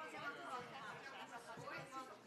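Indistinct chatter of several people talking at once, off-microphone, in a large hall.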